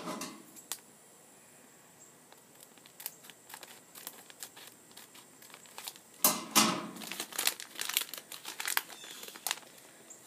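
A My Little Pony blind bag crinkling and tearing as it is opened by hand: faint scattered crackles at first, then louder crinkling and ripping from about six seconds in.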